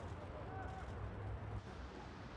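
Outdoor ambience at a football training ground: a steady low rumble with faint distant voices, one short pitched call about half a second in.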